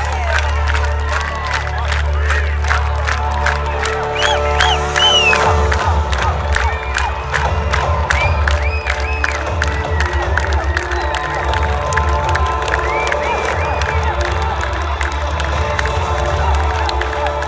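A rock concert crowd cheering, whooping and clapping over loud music with a deep held bass. About five seconds in the bass changes to a fast pulse.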